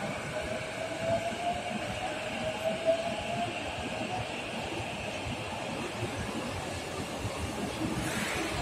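Chūō Rapid line E233-series electric train moving slowly out along the station track, over a steady rumble of wheels. Its traction motors give a whine that climbs gently in pitch over the first few seconds as the train gathers speed, then fades.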